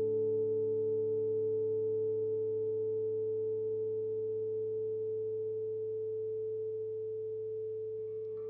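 Electric guitar through a Fender 6G6-B Bassman-style tube amp: one held note ringing on and slowly fading away.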